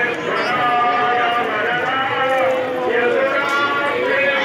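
Many overlapping voices of a crowd, among them long held, wavering notes like women singing together.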